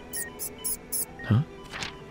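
A small pet rodent squeaking four times in quick succession, short and very high-pitched, within the first second.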